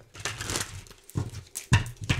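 A deck of tarot cards being shuffled by hand close to the microphone: a few short papery rustles and flicks.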